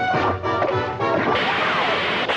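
Orchestral cartoon score, joined a little over a second in by a noisy crash sound effect that carries on over the music.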